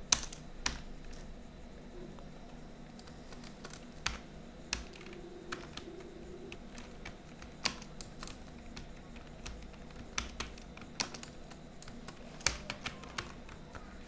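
Computer keyboard typing: irregular keystroke clicks, a few sharper than the rest, spread in short runs with brief gaps.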